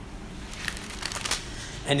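Pages of a Bible being leafed through: a few quick papery rustles and flicks between about half a second and a second and a half in, as the passage is looked up.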